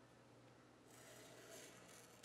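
Near silence, with a faint rubbing starting about a second in: a pen tip drawn along washi tape on a paper planner page.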